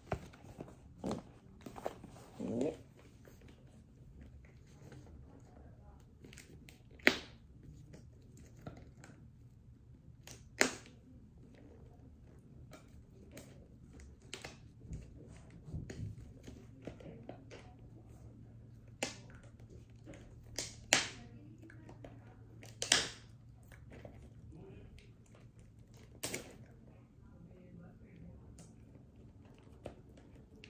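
A cardboard Pokémon card box being worked open by hand: scattered sharp clicks and short scratchy sounds, several seconds apart, with quiet stretches between.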